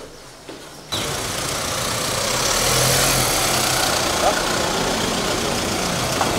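Volkswagen Amarok pickup's engine running as the truck drives slowly past, over a dense outdoor noise with voices in it; the sound begins abruptly about a second in.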